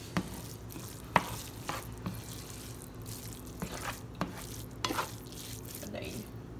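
Spatula stirring rice in a pan, scraping and knocking against it in irregular sharp ticks, the loudest about a second in, over a low steady hum.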